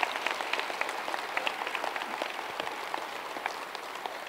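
Audience applauding, the separate hand claps distinct, easing slightly toward the end.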